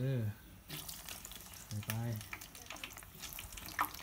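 Breaded cheese sticks frying in a pan of hot oil over low heat: a light, steady crackling sizzle.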